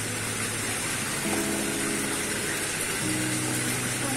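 Steady rushing and splashing of water at a koi pond, the surface bubbling and churned by koi crowding in for food.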